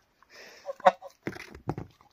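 A dog and a goose gnawing on the same bone: a run of sharp clicks and knocks of teeth and beak on bone, the sharpest about a second in.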